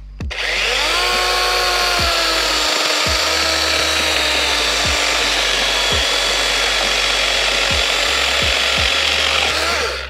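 DeWalt DCCS620 20-volt cordless chainsaw with a 12-inch bar cutting through a 4x4. The electric motor whines up to speed, its pitch sinks slightly as the chain bites into the wood, and it runs steadily through the cut until it stops just before the end.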